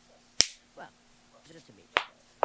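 Two sharp clicks, one about half a second in and one near the end, with faint voices in between.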